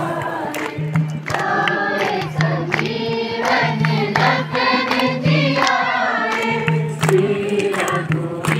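A song sung by a group of voices with musical accompaniment, over a repeating low note.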